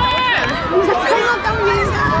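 Several young children's high voices calling and chattering over one another, with a general outdoor crowd murmur behind them.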